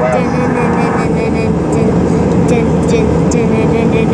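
Steady cabin noise of a jet airliner in flight, engines and airflow making an even rushing sound with a steady hum under it.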